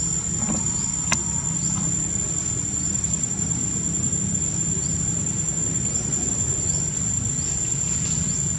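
A steady, high-pitched insect drone over a low rumble, with one sharp click about a second in.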